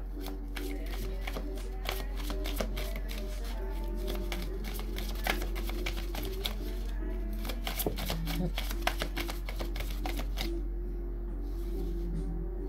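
A deck of tarot cards being shuffled by hand, overhand, with a rapid, continuous patter of card clicks throughout.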